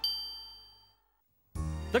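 A single bright, high ding, a cartoon chime sound effect, struck once and fading away over about a second. After a short silence, background music starts about one and a half seconds in.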